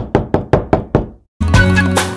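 Knuckles knocking on a wooden plank door: about six quick knocks in the first second, each with a short ringing tail. Background music comes back in about one and a half seconds in.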